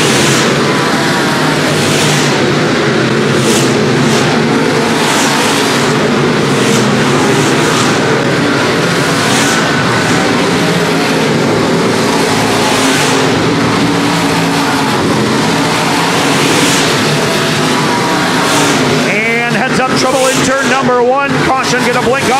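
A field of dirt-track stock cars racing, many engines running hard together in a steady, loud, dense drone; in the last few seconds the engine pitches waver up and down.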